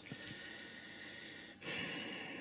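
Faint room hiss, then about one and a half seconds in a person takes an audible breath through the nose.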